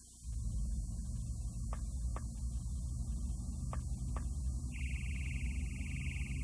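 A steady low hum with a few faint clicks, joined about five seconds in by a high buzzing tone: the opening sound effects of a cartoon TV promo on an old VHS recording. The tape's constant faint high-pitched squeal runs underneath.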